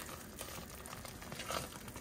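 A spoon stirring thick, sticky chicken and stuffing in a slow cooker's crock: faint soft stirring, with a few light knocks near the end.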